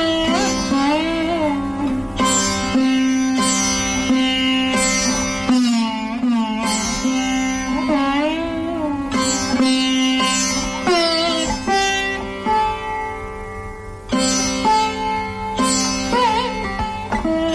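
Sitar playing Raga Bibhas: plucked melody notes with frequent sliding bends between pitches over a steady drone, dipping briefly in loudness near the end.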